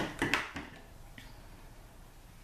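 A few brief handling noises, thread and paper being moved by hand on a tabletop, in the first half-second, then quiet room tone.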